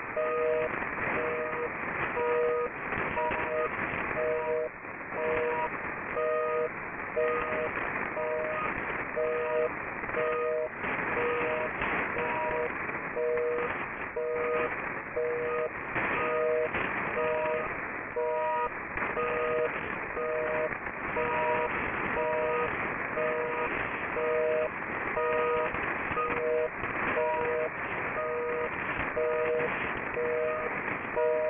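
HAARP's shortwave transmission received in AM on 2800 and 3300 kHz: two low tones a little apart in pitch, keyed on and off in short pulses over a steady hiss of static. The tones come through on both frequencies at once, in an attempt to replicate the Luxembourg effect.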